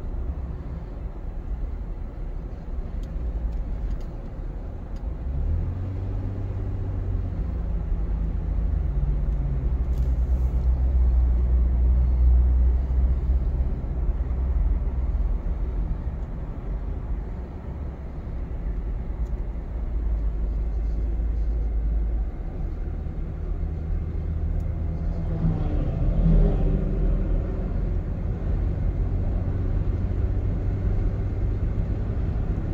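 A car driving on a paved mountain road, heard from inside: a steady low engine and tyre rumble, with the engine note stepping up about six seconds in.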